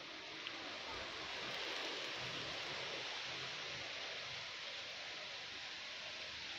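Steady, even hiss with no distinct events, swelling slightly about two seconds in.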